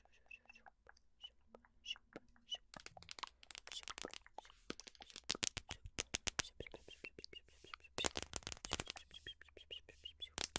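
Close-miked ASMR dry mouth sounds: sharp clicks and pops of lips and tongue, sparse at first, then coming in quick dense runs from about three seconds in, loudest near the end.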